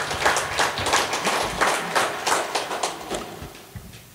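Applause from a small audience after a song, irregular hand claps dying away near the end.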